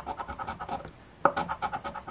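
A large coin scratching the coating off a scratch-off lottery ticket in rapid, even strokes, with a brief pause about halfway through before the scratching resumes.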